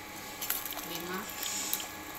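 A woman's voice says one short word, with a single sharp click about half a second in; otherwise the room is fairly quiet.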